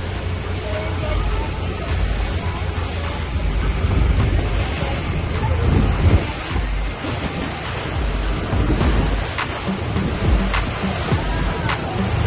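Wind buffeting the microphone over the rush of water against the hull of a small motorboat under way, in uneven gusts.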